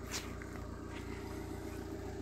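Mazda Demio's 1.3-litre four-cylinder petrol engine idling steadily.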